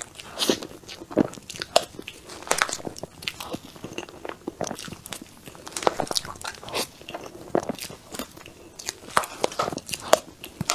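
Close-miked eating of a soft, creamy cheese-cream cake: irregular wet mouth smacks and clicks as large spoonfuls are taken and chewed, with a metal spoon scooping and scraping in a plastic tub.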